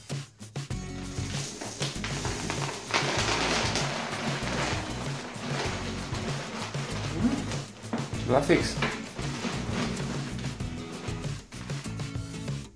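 Dry kibble pouring and rattling from a plastic bottle into the plastic hopper of an automatic pet feeder, loudest a few seconds in, over background music with a steady beat.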